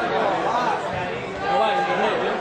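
Several voices shouting and talking over one another, the chatter of spectators and players at a small football ground, a little louder near the end.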